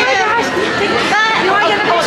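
People's voices talking and chattering, with crowd babble behind.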